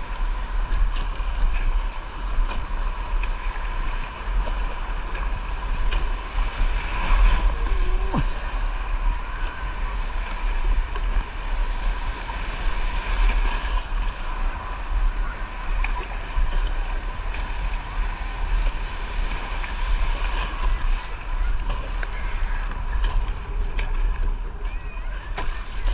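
Wind buffeting the camera microphone over the steady hiss and splash of surf and water around a surfski being paddled through small breaking waves.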